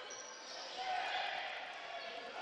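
Low sounds of play on an indoor basketball court: the ball and players' shoes on the floor under a steady crowd hum in the gym.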